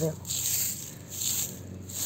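Dry straw mulch rustling in two swells about a second apart.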